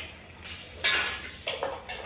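A metal spoon clinking and scraping against a metal cooking pot and steel plates: several short clatters, the loudest about a second in.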